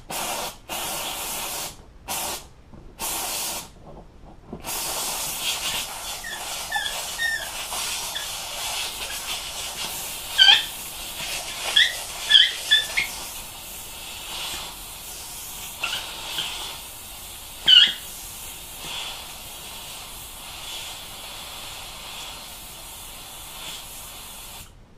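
Handheld steamer wand hissing, first in several short bursts and then continuously, as steam is played over a headrest's upholstery cover to warm it and ease out wrinkles before it is pulled tight. A few brief high squeaks stand out around the middle.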